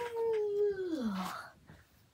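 A dog's single drawn-out call, about a second and a half long, holding its pitch and then sliding down to end low.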